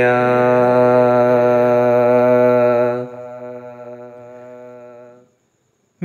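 Male naat reciter's unaccompanied voice holding the last syllable of a line as one long steady note. It drops away about three seconds in, trails on faintly and stops about five seconds in.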